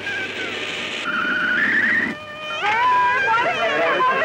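Film soundtrack music that cuts off sharply about two seconds in. After that, a crowd of many voices starts talking and calling out at once.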